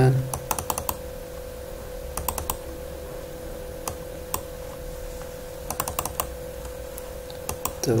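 Computer mouse and keyboard clicks, scattered singly and in short runs of two to four, over a faint steady hum.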